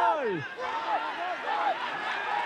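A Spanish-language football commentator's goal cry, "¡gol, gol, gol, gol!". A long held shout falls away in pitch in the first half second, then breaks into a run of short repeated calls.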